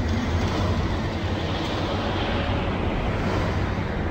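Steady low rumble with hiss over it and a low hum underneath.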